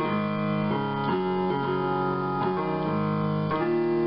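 Piano keys pressed by a dog's paws: a run of held piano chords, each giving way to the next every half second to a second.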